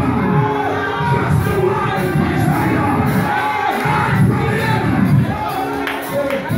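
Live church worship music with many voices of a congregation singing along, loud and continuous.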